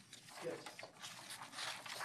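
Faint voices answering "yes" over low room noise.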